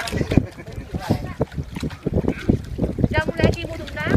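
Several people's voices talking over one another, with a higher-pitched call about three seconds in, amid short knocks.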